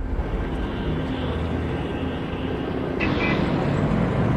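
A car driving: a steady low rumble of engine and road noise heard from inside the cabin, turning a little brighter about three seconds in.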